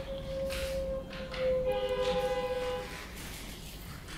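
A steady held tone, joined about one and a half seconds in by several higher steady tones sounding together like a chord. All of them stop shortly before three seconds in.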